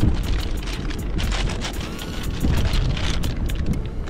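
Plastic bag crinkling and rustling as a boxed air compressor is lifted out and unwrapped, over low wind rumble on the microphone and background music with a steady beat.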